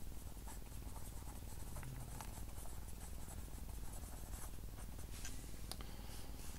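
Ballpoint pen writing on notebook paper: faint, continuous scratching made of many short strokes and small taps as words are written.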